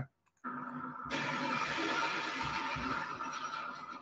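A rushing, whooshing noise from a played video's soundtrack, heard through a screen share. It starts about half a second in and grows fuller and brighter about a second in.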